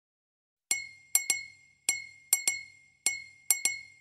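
Bright, glassy chime notes from a title-intro sound effect, struck in a repeating pattern of one note then a quick pair, each ringing briefly and dying away.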